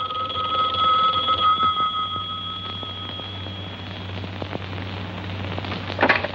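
A telephone bell rings: one ring, strong for about a second and a half, then fading away over the next few seconds.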